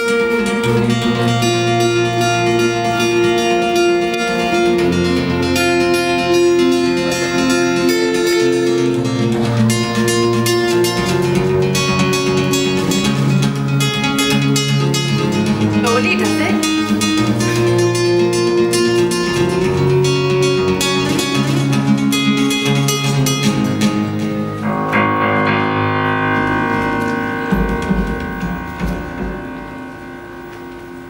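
Acoustic guitar played solo as an instrumental passage, with a steady run of picked notes and chords. About 25 seconds in the guitar stops and the music thins to a few held tones that fade down near the end.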